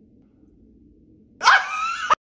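Faint room tone, then about a second and a half in a sudden loud, high-pitched yelp from a man, cut off abruptly.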